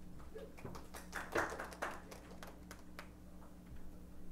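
Light, scattered clapping from a small audience, a few irregular claps that thin out after the first couple of seconds, over a faint steady room hum.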